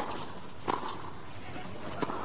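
Tennis rally: a single sharp racket-on-ball hit about two-thirds of a second in, over steady low crowd noise.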